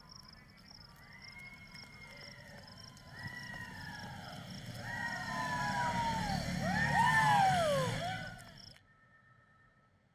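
Several overlapping sirens wailing, rising and falling and growing louder over a low rumble, with a steady high chirring of crickets behind; it all cuts off suddenly near the end, leaving quiet room tone.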